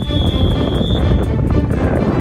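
Wind buffeting the microphone with a heavy rumble, and a single steady high whistle blast about a second long at the start.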